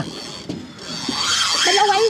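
Fishing reel drag running, a fast ratcheting buzz as a hooked fish pulls line off, growing louder from about a second in. A voice shouts briefly near the end.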